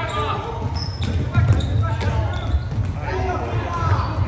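Floorball game play in a large sports hall: players' shouts and calls over sharp clicks of plastic sticks and ball and the thud of running feet on the court floor.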